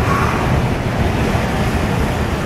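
Floodwater rushing and splashing around a car as it drives through deep, fast-flowing water over the road, heard from inside the car as a steady, loud wash.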